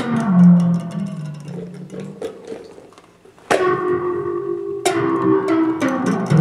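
Music from a plucked or struck string-like instrument. A low note sounds at the start and rings on, then fresh higher notes are struck about halfway through and twice near the end, over light, quick ticking.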